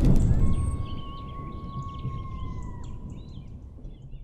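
A low rumble dies away after a loud hit, while birds chirp in short high bursts. A long, steady whistle-like tone runs under them and sinks slightly in pitch before stopping.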